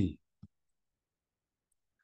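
The last syllable of a man's speech ends, one short soft click follows about half a second in, then near silence.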